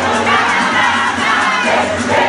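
A crowd of young people shouting and cheering together, many voices at once, loud and without a break.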